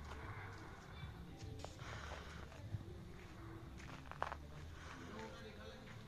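Faint distant voices and music, with a few soft clicks and steps from someone walking.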